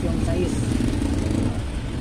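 A man's voice says a few words over a steady low background rumble that does not change.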